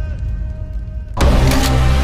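Cinematic title-card sound design: a low rumble, then about a second in a sudden loud deep hit that holds as a heavy, engine-like drone with a higher tone above it.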